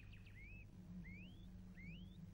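Faint bird calls: three short rising whistled chirps about two-thirds of a second apart, over a low steady hum.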